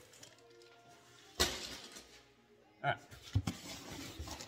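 A bundle of metal clamps set down on a metal workbench: one sharp clank about a second and a half in, with faint metallic ringing, and a smaller knock near the end.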